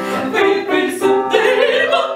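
Two classically trained female voices, soprano and mezzo-soprano, singing an operatic duet with vibrato over grand piano accompaniment.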